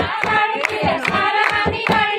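A group of women singing Punjabi boliyan together to quick, even hand clapping, about four claps a second.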